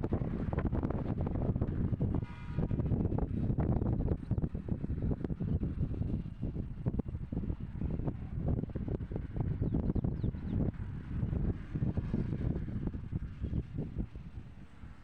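Wind buffeting the phone's microphone: a low rumble that rises and falls with the gusts.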